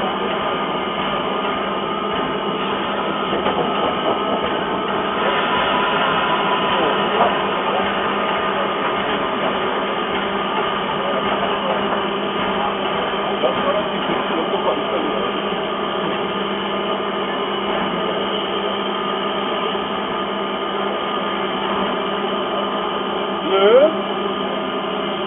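Prussian P8 class steam locomotive close by: a steady hiss of escaping steam with a constant hum underneath and no distinct exhaust beats.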